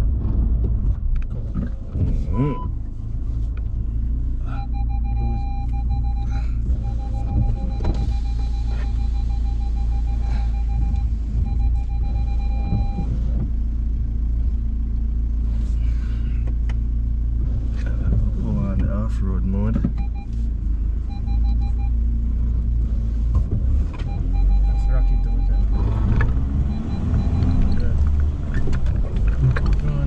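Cab interior of a 2021 Volkswagen Amarok pickup crawling up a rough, muddy dirt track: a steady low rumble of engine and tyres. A rapid electronic beeping sounds for several seconds from about four seconds in, and again briefly twice later.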